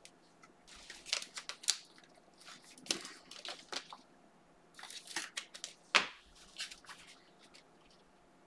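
A stack of glossy trading cards being flicked through by hand, with quick clicks and slides of card on card in three short flurries. The loudest click comes about six seconds in.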